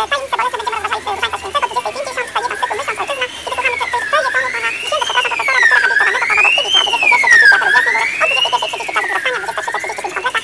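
A wailing siren rising and falling about once every second and a half to two seconds. It is loudest in the middle, over a continual chatter of short croaking clicks and chirps.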